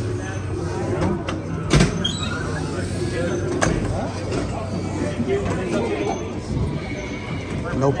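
Busy dark-ride loading station: indistinct background voices over a steady low hum, with two sharp clicks a couple of seconds apart.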